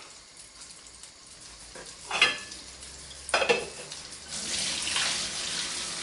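Pasta cooking water being drained into a sink: two clanks of the pot about two and three seconds in, then water pouring out steadily from about four seconds on. Underneath it, guanciale sizzles faintly in a hot frying pan.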